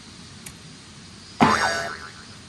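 An edited-in comic sound effect about one and a half seconds in: a sudden ringing sound whose pitch bends downward and fades within half a second. A faint click comes shortly before it.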